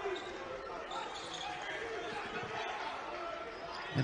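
Basketball game ambience in a large, sparsely filled gym: faint, distant voices and court noise, with the thuds of the ball being dribbled on the hardwood floor.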